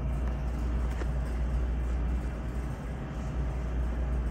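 Room tone: a steady low rumble with a faint click about a second in.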